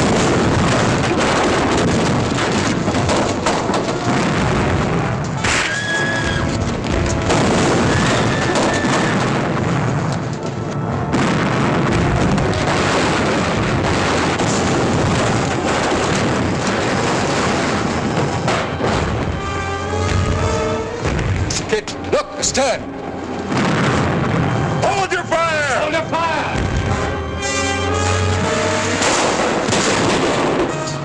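Film battle soundtrack: cannon booms and the clamour of a deck fight, with voices shouting over an orchestral score.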